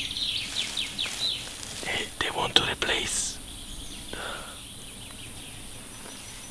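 Birds chirping in woodland: a quick run of short, high chirps in the first second or so, more chirps around two to three seconds in, then a quieter outdoor background.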